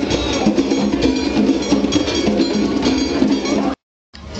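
A drum circle: several hand drums played together in a steady rhythm, with a pitched instrument sounding over them. The music cuts off suddenly near the end.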